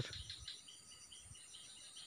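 Faint insects chirping in a steady, evenly pulsing trill, several pulses a second.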